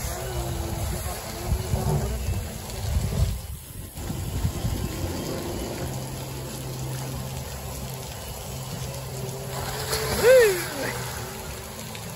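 Water running down a tube water slide into a pool, with a child's voice yelling once, rising and falling, about ten seconds in as he comes down the slide.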